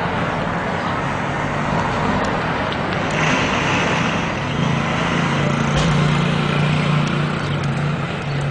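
Street traffic noise with a motor vehicle's engine running close by; the low engine hum grows louder about three seconds in.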